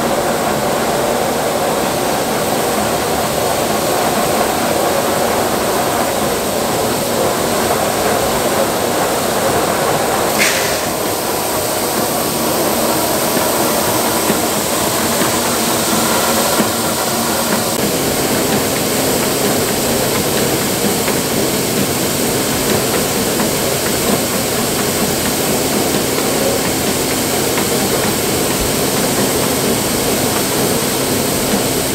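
Shelled corn pouring in a steady stream from a dump trailer's gate through a steel grate into a grain pit: a continuous rushing hiss, with machinery running underneath. A short sharp tick about ten seconds in, and a low steady hum joins about eighteen seconds in.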